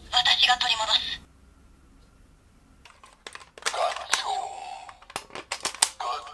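Electronic voice call and sound effects from a Kamen Rider Buggle Driver toy belt's small speaker: a short spoken phrase at the start, a pause, then plastic clicks and a pitched electronic tone, ending in a quick run of clicks as a cartridge is handled and inserted.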